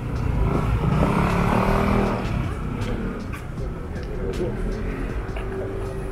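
A motor vehicle passing, its engine and tyre noise swelling to a peak about a second or two in and then fading.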